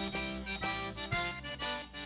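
Cajun diatonic button accordion playing a waltz melody, live, with a band's low bass notes and drum strikes underneath.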